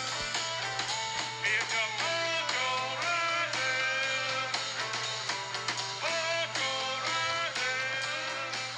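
Background music: a guitar track with a steady run of notes.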